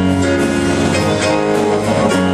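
Live southern gospel band playing, with strummed guitar to the fore over a steady low note.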